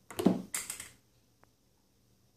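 A short spoken sound and a breathy hiss, then near quiet in a small room with one faint click as the plastic catch-can filter element is handled.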